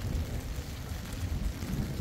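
Low, uneven rumble of wind buffeting the microphone, over a steady hiss of rain on a wet street.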